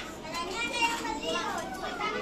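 Young children's voices chattering and calling out at play, high-pitched, with no clear words.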